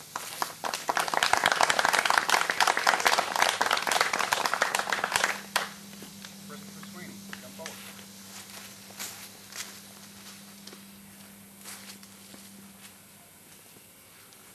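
A small group applauding for about five seconds, then dying away to a few scattered claps.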